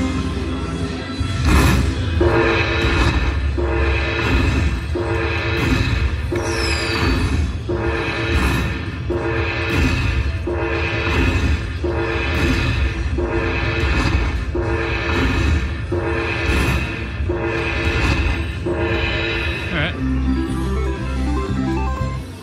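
Dragon Link Happy & Prosperous slot machine playing its win-tally music as the bonus prize counts up on the win meter: a short chiming phrase repeated over and over, about once every second and a half, changing near the end.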